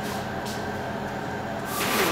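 A steady low mechanical hum with a soft rushing noise, growing louder near the end.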